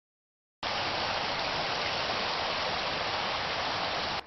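A steady, even hiss of noise that cuts in suddenly about half a second in, following silence, and holds unchanged throughout.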